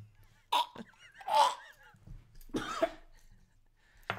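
A man coughing and gagging as if choking, in three short bursts, the middle one loudest. It is a mock choke after pretending to swallow a small key.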